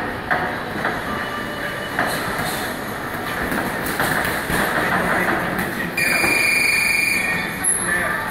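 Boxing sparring in a ring: gloved punches landing and feet shuffling on the canvas over steady gym noise, with a few sharp knocks. Near the end a steady, high electronic tone sounds for about a second and a half.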